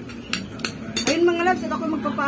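Metal cutlery clinking against a dish, three sharp clinks in the first second, then a woman starts speaking.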